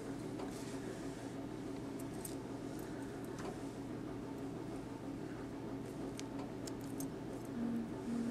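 Quiet room tone with a steady low hum, broken by a few faint ticks and rustles from hands handling the fly-tying materials and tools.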